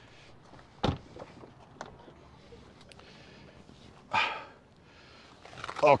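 A man climbing into the back seat of a Tesla Model Y: a single sharp thump about a second in, a few light clicks, and a short grunt of effort about four seconds in as he squeezes in.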